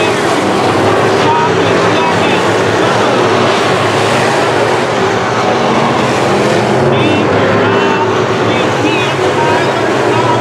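Several sport modified dirt-track race cars running at speed, their engines a loud, steady, overlapping drone as the field passes and races through the turns.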